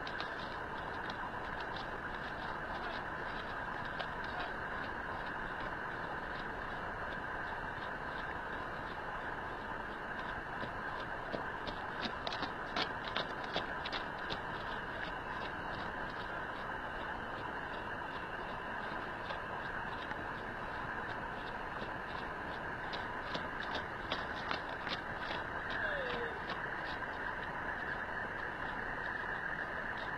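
A horse's hooves on dirt while it circles on a lunge line: faint, scattered footfalls over a steady background hiss.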